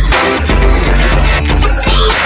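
Electronic music with a heavy bass line and a driving beat.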